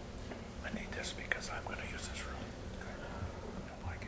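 Soft whispered speech, faint and off-microphone.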